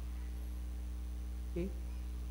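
Steady low electrical mains hum, with a brief bit of a man's voice about one and a half seconds in.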